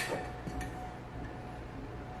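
Quiet kitchen room tone with a faint steady hum and a faint tap about half a second in.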